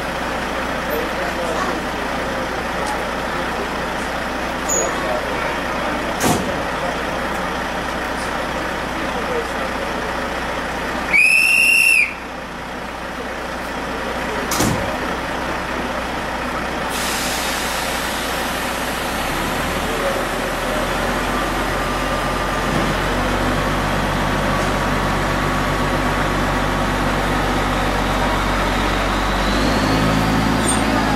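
A high whistle blast about a second long, the loudest sound, from a narrow-gauge train at a station about to depart, over passenger chatter. From the second half a low, steady locomotive engine hum comes in and grows louder towards the end as the train gets ready to pull away.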